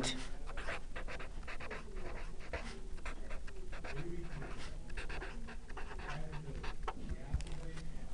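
Felt-tip marker scratching and squeaking across paper in many quick short strokes as a line of words is hand-written.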